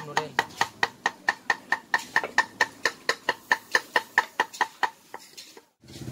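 A cleaver chopping rapidly on a wooden board to mince fresh herbs, in a steady rhythm of about four to five strokes a second, each chop with a short metallic ring. The chopping stops about five seconds in.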